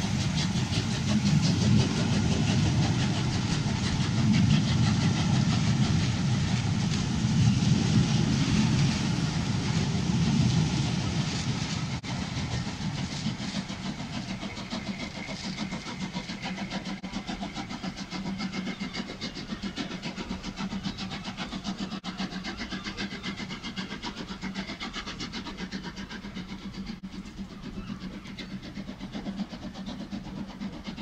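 Passenger coaches of a train rolling past close by, their wheels rumbling on the rails. About eleven seconds in the sound falls away to a quieter, steady rumble as the train draws off into the distance.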